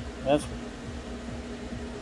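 A steady low hum like a fan or air conditioner running, with one constant tone and no distinct clicks or knocks, after a single spoken word near the start.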